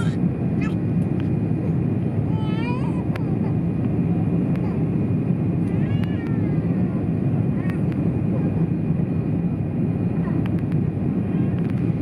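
Steady low rumble of a jet airliner's engines and airflow heard inside the passenger cabin during the descent to land.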